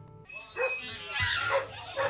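Music stops, then a few short calls with bending pitch follow at a lower level, dog-like in character, opening the next track.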